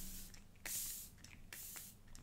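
Hourglass makeup setting spray misted from a pump bottle onto the face: two short, faint hissing sprays, each about half a second long.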